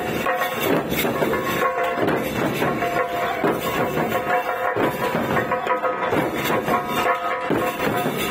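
Dhol barrel drums and tasha drums beaten together by a street drum group in a fast, steady, repeating rhythm, with a few held tones sounding over the drumming.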